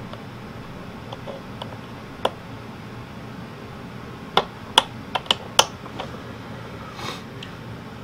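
A handful of short, sharp clicks and taps from fingers working the metal pushrod and clevis at an RC model flap's control horn. One comes about two seconds in and a quick cluster follows between about four and six seconds, over a faint steady hum.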